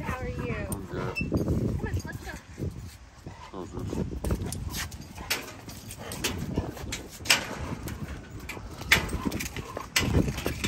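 A dog vocalizing amid indistinct voices, with two sharp clicks about seven and nine seconds in.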